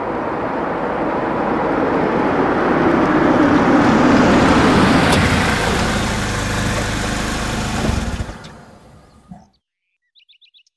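A car driving past, engine and tyre noise swelling to a peak about four seconds in, dropping in pitch as it goes by, then fading away near the end.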